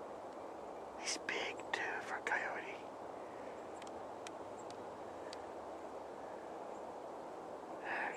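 A man whispering for about two seconds, over a steady faint background hiss, followed by a few faint clicks.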